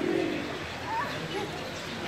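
Domestic geese on a pond calling: a low honk right at the start, then a short rising call about a second in.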